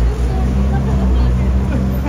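Low, steady rumble of an idling vehicle engine close by, with faint voices underneath.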